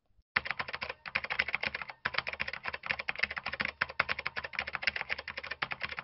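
Rapid computer-keyboard typing clicks, many per second, starting shortly after the beginning and keeping up an even pace: a typing sound effect laid under on-screen text as it appears.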